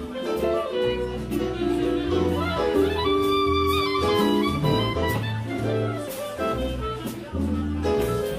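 Live jazz from a small band: saxophone melody over a walking bass line, with keyboard, guitar and light drums.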